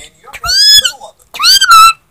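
Pet budgerigar giving two short, high-pitched chirping calls, the first about half a second in and the second near the end, each rising and then falling in pitch.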